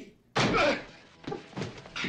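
A loud slam-like impact from a film fight scene about a third of a second in, followed by a few lighter knocks and thuds.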